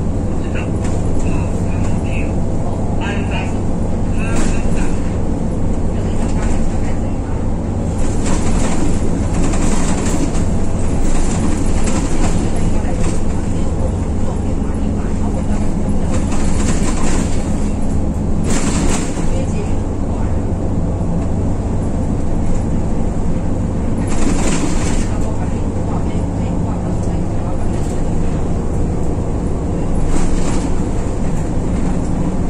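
Inside a city bus driving at speed: a steady engine drone and road rumble fill the cabin, with a few brief swells of louder hiss.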